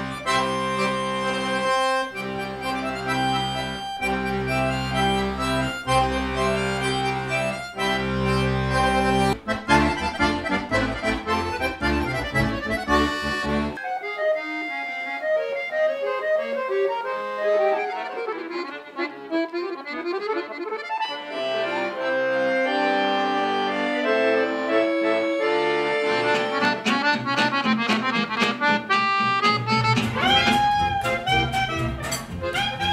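Accordion music. In the first half, sustained chords over deep bass notes are broken by short gaps about every two seconds. About fourteen seconds in, it changes to a chromatic button accordion playing a solo melodic passage in the middle and upper register, with bass notes coming back in later.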